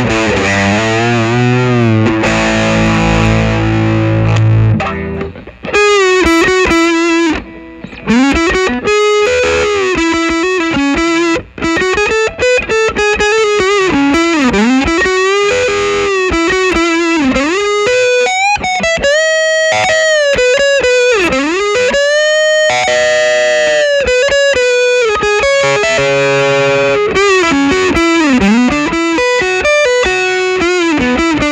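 Gibson Les Paul electric guitar through a Fulltone PlimSoul overdrive pedal with the sustain knob all the way up and the stage-2 clipping still off: loud, sustaining soft-clipped overdrive. Held chords ring for the first few seconds, then a lead line with string bends and vibrato.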